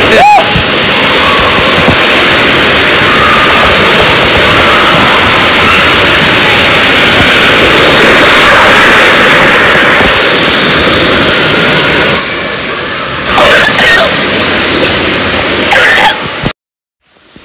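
Loud, steady rush of pool water close to the microphone, which drops away about twelve seconds in. Brief voices follow near the end.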